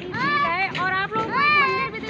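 Young children's high-pitched voices calling out several times, their pitch rising and falling.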